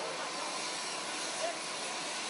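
Steady rushing noise of jet aircraft engines running on an airport apron, with faint, indistinct voices over it.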